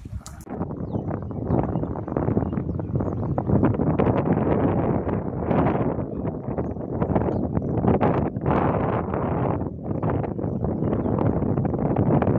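Wind buffeting the microphone of a phone filming outdoors: a rough, uneven noise that rises and falls in gusts, starting suddenly about half a second in.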